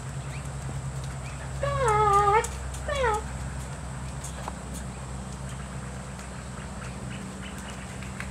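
A woman's high, drawn-out sing-song call about a second and a half in, wavering in pitch, then a shorter falling call about a second later, over a steady low hum.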